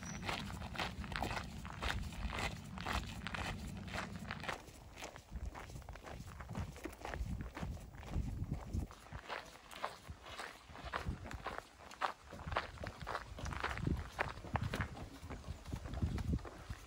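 Footsteps of a hiker walking at a steady pace on a rural path, about two steps a second. A low rumble is heard for the first four seconds or so.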